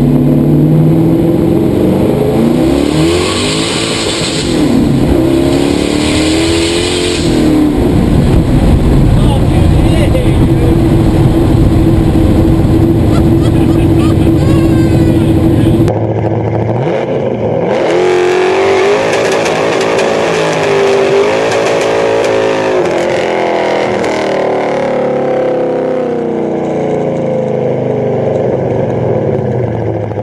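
Twin-turbocharged 572 cubic-inch Chrysler Hemi V8 in a 1968 Dodge Charger driving on the street. It is heard from inside the cabin, rising and falling in pitch a few times and then holding a steady note. After an abrupt change about halfway through, the engine pitch climbs and drops several times again.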